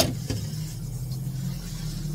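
A steady low mechanical hum, with a single utensil clatter at the very start.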